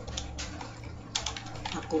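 Computer keyboard being typed on: a handful of separate keystroke clicks, several in quick succession a little past the middle.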